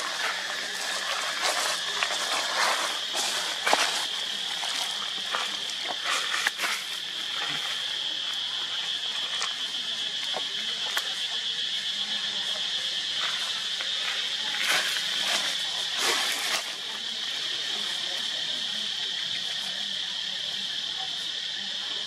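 A steady, high-pitched drone of insects, with brief crackles and rustles in the first seven seconds and again around fifteen to sixteen seconds.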